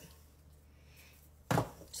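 A single sharp thump about one and a half seconds in, after a near-silent pause: a bowl being set down on a hard kitchen countertop.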